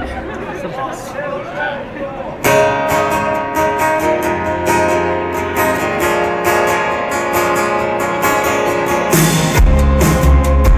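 Acoustic guitar strummed, starting suddenly about two seconds in after a few seconds of voices. A full band's drum kit and bass come in near the end.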